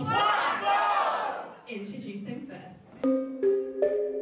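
A loud burst of yelling and cheering from the crowd that dies away over about a second and a half. About three seconds in, entrance music starts suddenly: a keyboard tune of clear, steady, repeated notes.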